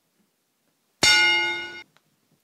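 Apple MacBook startup chime: a single chord that sounds suddenly about a second in, fades, and cuts off after under a second. It signals that the laptop has powered on and is starting to boot.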